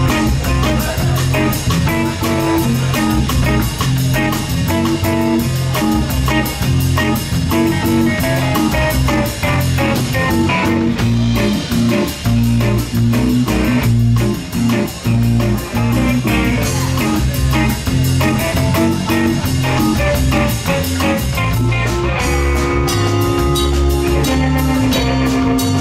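Funk band playing live with no vocals: electric guitar, bass guitar, keyboard and drum kit, the drums keeping a steady beat with fast, even hi-hat strokes under the bass line.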